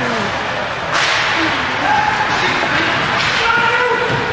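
Ice hockey game during play: a steady wash of skating and crowd noise with scattered shouts from players and spectators, and a sudden sharp rise in noise about a second in.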